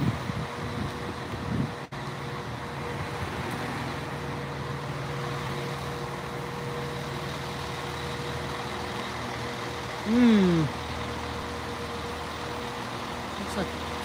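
Northern Class 156 diesel multiple unit 156460 idling at the platform, its underfloor diesel engine giving a steady hum. About ten seconds in, a brief loud sound falls in pitch.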